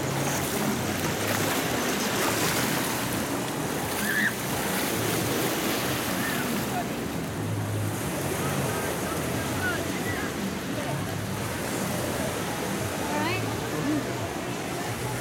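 Steady rush of water in a wave pool, with faint scattered shouts and voices of bathers over it.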